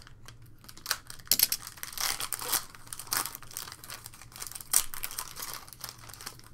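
Foil trading-card pack wrapper crinkling and tearing as it is opened by hand, an irregular run of sharp crackles and short rustles.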